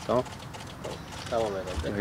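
Mostly speech: one man says a short word, then low, soft voices follow, with faint scattered clicks in the background.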